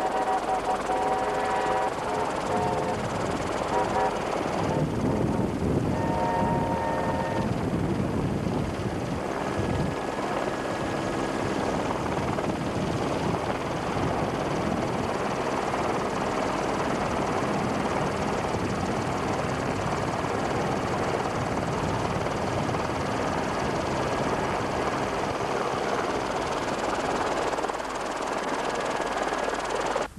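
Steady helicopter rotor and engine noise heard from aboard the helicopter. Over it come two held, chord-like blasts of a steam locomotive whistle, the first about a second in and the second about six seconds in.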